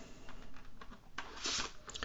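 Soft handling noise of a Polaroid camera with a 4x5 sheet-film holder fitted: light rubs and small clicks, with a short sliding hiss about halfway through as the holder's dark slide begins to be drawn.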